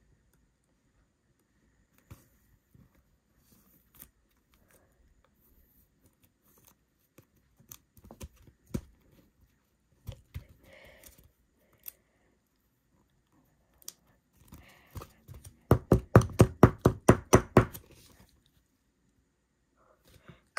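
A baseball card being handled into a rigid clear plastic toploader: scattered small plastic clicks and rustles. Near the end comes a quick run of about fifteen sharp knocks, roughly six a second, from the toploader being tapped or shaken; this is the loudest part.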